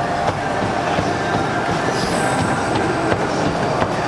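Several gym treadmills running with people walking on them, a steady mechanical rumble of belts and motors.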